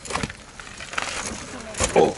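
Mountain bike knocking and clattering against rock as the rider hops it up rock steps, with a few short impacts. The loudest, deepest thump comes near the end.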